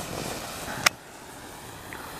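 A potassium nitrate, sugar and crayon-wax smoke bomb burning with a steady hiss, broken by a single sharp crack a little under a second in, after which the hiss is quieter.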